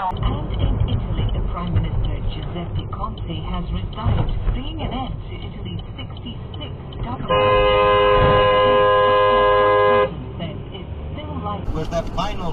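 A car horn held in one steady blast of nearly three seconds, about seven seconds in, over dashcam road noise.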